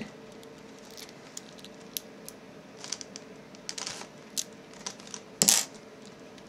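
Small metal clicks and taps as a lock pick and a Euro thumb-turn lock cylinder are handled. The clicks are scattered and light, bunch together a little before four seconds in, and a sharper click comes about five and a half seconds in.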